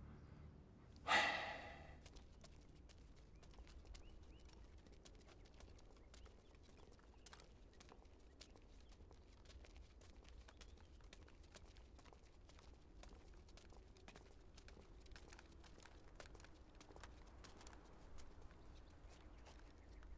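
A man's sigh about a second in, then faint footsteps of several people walking on a stone path, heard as scattered light clicks over a low background.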